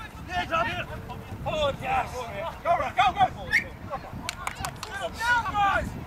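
Indistinct shouting from several voices at a distance, players calling to each other and spectators, with no clear words. The calls overlap in short bursts throughout.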